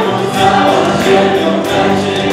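Live worship band music: keyboard, electric bass and drum kit playing, with a group of voices singing together over it.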